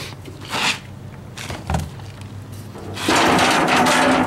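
Plastic gas cans being handled and shifted on a concrete floor: scattered knocks and scrapes, with a dull thump. About three seconds in, a louder pitched sound with tapping comes in.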